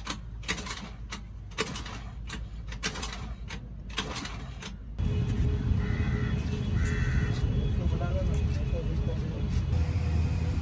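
Scattered clicks and knocks of hands working on the car's small scooter engine, then from about halfway a steady low rumble of the scooter engine running.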